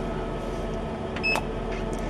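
Steady electrical hum of a running CO2 laser cutter, with a short high electronic beep and a click a little past halfway as its test-fire button is pressed to shoot a dot.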